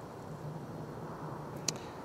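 Faint steady outdoor background noise at night, with a single short click about three-quarters of the way through.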